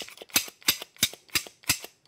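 Ruger 10/22-type rifle's bolt and charging handle being worked back and forth by hand in the freshly reassembled receiver, a sharp metallic clack about three times a second.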